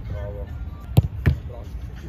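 A football struck with a tennis racket and stopped by a diving goalkeeper: two sharp thuds about a third of a second apart, about a second in.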